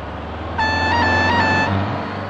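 A single reedy, horn-like tone held for about a second, rising slightly in pitch twice, over a steady low rumble.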